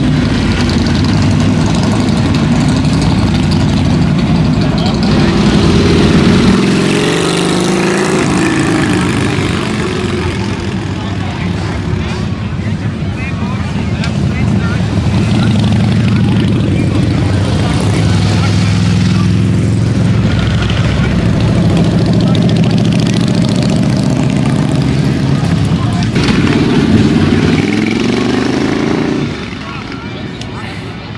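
Harley-Davidson V-twin motorcycles riding past one after another with a deep, steady rumble. Engine pitch rises as bikes accelerate, about six seconds in and again near the end, and the sound drops off just before the end.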